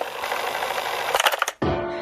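A hiss of static-like noise that cuts off suddenly about one and a half seconds in. Music with a steady low note starts straight after.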